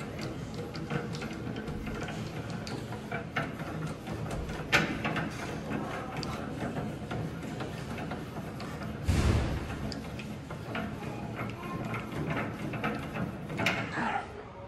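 Hand-cranked landing-gear mechanism on an aircraft exhibit being wound, with irregular mechanical clicks and ratcheting and a louder thud about nine seconds in. Music plays in the background.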